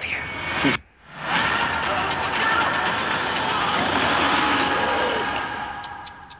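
A short laugh, then after a sudden brief silence a loud, sustained rushing sound effect from the movie trailer swells in, holds for about four seconds and fades away near the end.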